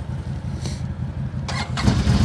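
A CFMoto CForce 800 XC's V-twin idles throughout. About one and a half seconds in, a CFMoto CForce 1000 Overland's 963 cc V-twin is started with a couple of sharp clicks and catches, and the low rumble grows louder near the end.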